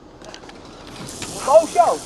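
Handling and rustling noise builds up as the camera is swung. About one and a half seconds in, a person gives a couple of short excited yelps.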